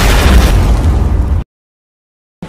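Cinematic title-card sound effect: a loud, deep boom that cuts off suddenly about one and a half seconds in, followed by silence.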